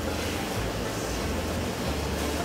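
Steady room noise: an even hiss over a low hum, with no distinct event.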